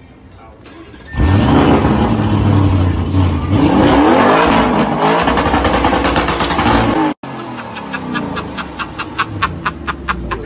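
Car engine starting with a sudden loud burst about a second in, then revved, its pitch rising and falling, until the sound cuts off abruptly after about seven seconds. A quieter stretch with rapid, even pulses follows.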